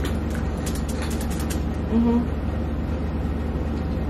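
Chewing of crispy fried frog legs, a run of short crisp clicks in the first second and a half, over a steady low hum.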